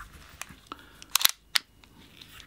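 A few sharp metallic clicks from a Western Arms SW1911 airsoft pistol being picked up and handled, the loudest two close together a little past the middle.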